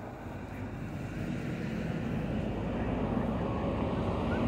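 Engine of an Ashok Leyland Bada Dost pickup truck running, with a steady low rumble that grows gradually louder.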